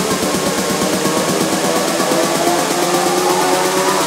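Electronic dance track in a breakdown, without kick drum or bass: a fast, even pulsing synth pattern plays, and a rising synth sweep starts about halfway through as the build-up begins.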